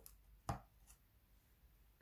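Mostly near silence, with one short sharp tap about half a second in and a faint second tap shortly after, as a bar of soap is picked up.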